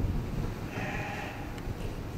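A sheep bleating once, a single call of about half a second near the middle, over a steady low rumble.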